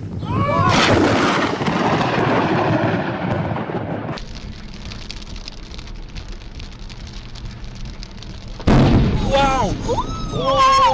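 Close lightning thunder: a loud crack that rumbles and dies away over about three seconds, with people's excited shouts over it. Then steady rain and road noise inside a car, until a second, sudden and even louder crack of lightning striking close by, followed by high-pitched screams.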